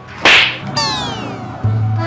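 A loud, sharp slap across the face about a quarter second in, followed by a falling sweep of several tones gliding down together, over soft background music.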